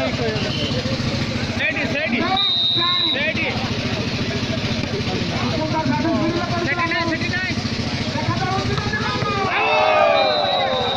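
Crowd of volleyball spectators talking and shouting together, many voices at once. A whistle blows once, about two and a half seconds in, a single steady high blast of under a second, over a steady low hum.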